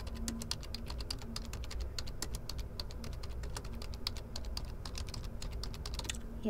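Computer keyboard typing: a quick, uneven run of key clicks as a sentence is typed.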